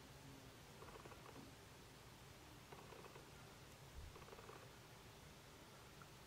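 Near silence: room tone with a few faint, short scratches of a makeup brush dabbing glitter glue onto the eyelid.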